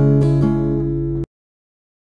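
Acoustic guitar playing a chord with two more light strokes, ringing until the sound cuts off abruptly a little over a second in.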